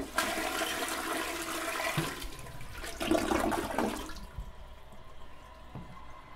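Toilet flushing: a loud rush of water for about four seconds, then quieter running water with a faint steady tone.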